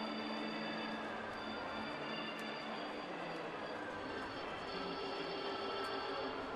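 Music playing over a ballpark's PA system, heard at a distance over the steady murmur of the stadium crowd.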